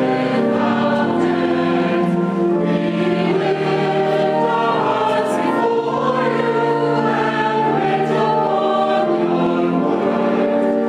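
Choir singing a slow hymn in long held chords that change every second or so.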